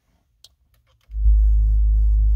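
Music starting on the car's audio system: after a second of near silence, a loud, deep, held bass note comes in, the opening of the track just selected from the USB drive.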